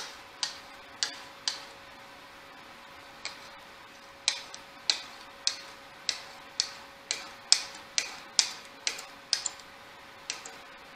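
Hardened steel round burnisher stroked along the edge of a tool-steel card scraper clamped in a vise, each pass a short sharp scraping click. There are three strokes, a pause of a couple of seconds, then about a dozen more at roughly two a second. Drawn at about five degrees, the strokes are turning the scraper's edge into a burr.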